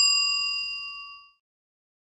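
A bell-like ding sound effect rings out and fades away about a second in. It sounds the end of a quiz question's answer countdown.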